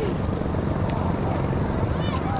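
Steady low wind rumble buffeting the microphone over shallow seawater washing across a stone jetty.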